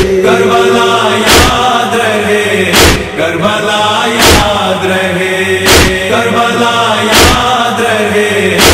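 Male chorus chanting a nauha lament in long held notes, with a sharp matam chest-beat about every second and a half keeping the rhythm.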